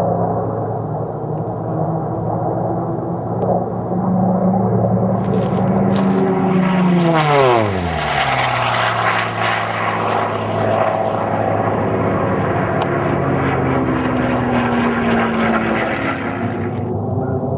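Propeller-driven Unlimited-class racing warbirds with big piston engines running at full power, a loud steady drone. About seven seconds in, one passes close and its pitch drops steeply as it goes by. Near the end the pitch falls again, more slowly.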